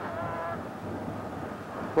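Steady rush of wind on the microphone out on open ice, with a brief faint vocal hum at the very start.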